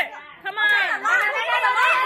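Children's high-pitched voices chattering over one another, after a short lull at the start.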